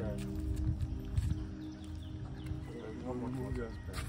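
A horse's hooves thudding as it walks, over background music with long held notes; a voice comes in briefly near the end.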